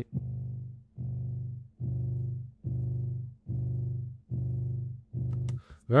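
A short, low-pitched musical sample looping seven times, about once every 0.85 s. Each repeat starts abruptly and fades out under a drawn-in volume envelope.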